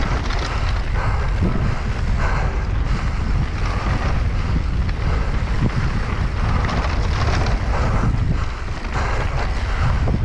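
Wind noise on an action camera's microphone from a fast mountain-bike descent, over a steady low rumble of tyres rolling on a dry, dusty dirt trail.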